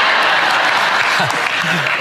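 Television studio audience applauding in a steady, even wash of clapping, with a man's voice coming back in near the end.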